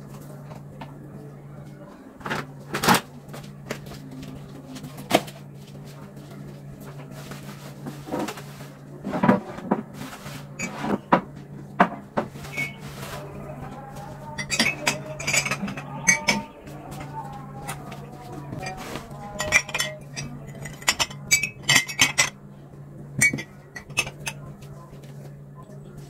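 Glass mugs clinking and knocking together as they are gathered onto a plastic tray: a string of sharp clinks, busiest in the second half. A steady low hum runs underneath.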